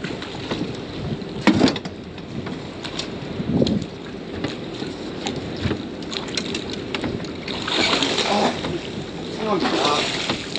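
Water splashing as a hooked jewfish (mulloway) thrashes at the surface and is scooped into a landing net, loudest near the end, over steady wind on the microphone. A sharp knock sounds about a second and a half in.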